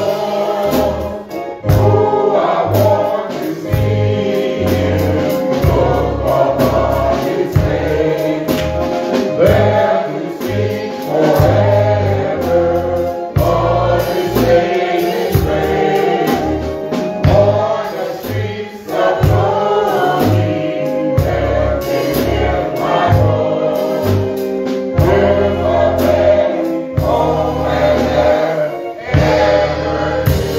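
Gospel singing with a group of voices and instrumental accompaniment: sustained chords with low bass notes pulsing underneath.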